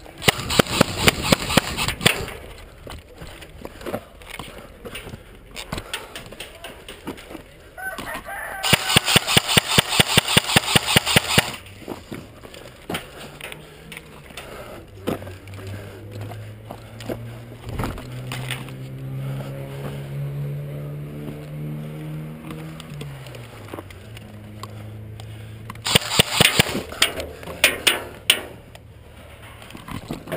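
Airsoft rifle fired on full auto, close by: three bursts of rapid shots, one at the start, one about eight seconds in lasting about three seconds, and one near the end.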